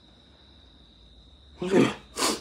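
Quiet room tone with a faint steady high-pitched whine, then a short loud vocal sound from a young man about one and a half seconds in.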